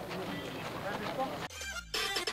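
Background chatter and noise of a crowd of people milling about, then about one and a half seconds in a sudden cut to an electronic transition effect with falling tones.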